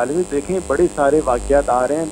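Speech over a steady low electrical mains hum.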